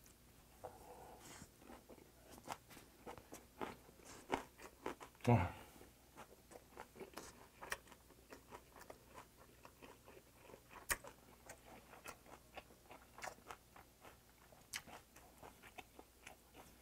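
A person chewing a large mouthful of pumpkin-leaf and rice wrap, with soft, faint wet smacks and mouth clicks scattered throughout. A brief exhaled "wah" about five seconds in, and one sharper click a little before eleven seconds.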